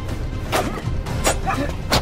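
Film fight-scene sound effects over a music score: three sharp blow impacts, roughly two-thirds of a second apart, with short grunts and shouts from the fighters between them.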